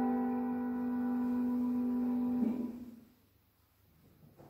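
Keyboard music ending on a long held chord, which stops about two and a half seconds in and fades to near silence.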